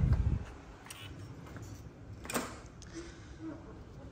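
Hotel room door being unlocked with an RFID wristband and pushed open. A low handling thump comes at the start, then a sharp click from the lock or latch a little past halfway.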